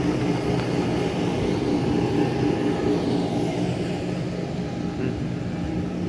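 A steady mechanical drone with several fixed low tones, like an engine or machinery running at an even speed.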